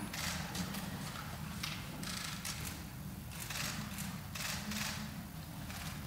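Quiet room tone of a large chamber full of standing people: a steady low hum with irregular soft rustles and shuffles.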